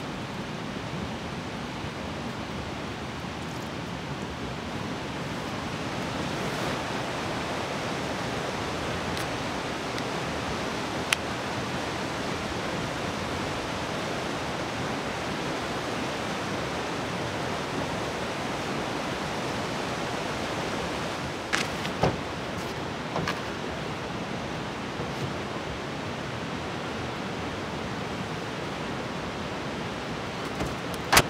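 A rushing mountain river, a steady hiss and rush of fast water running high with spring runoff, swelling a little partway through. A sharp click stands out near the middle, and a few light knocks come later.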